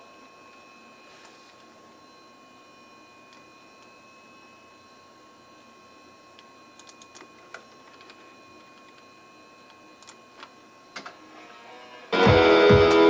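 Dead air on a radio broadcast recording: faint steady hiss with a thin, steady high tone that fades out about ten seconds in, and a few faint clicks in the second half.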